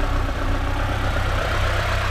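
Lada Niva Travel's 1.7-litre four-cylinder petrol engine idling steadily, heard from the open engine bay.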